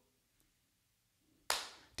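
Near silence, then a single short, sharp sound about one and a half seconds in that fades quickly.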